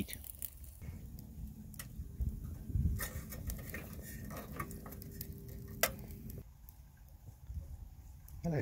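Twigs crackling and popping as they burn in a small rocket stove: scattered sharp pops over a low, steady rush of the fire drawing, with a faint steady hum. The low rush and hum stop abruptly about six seconds in.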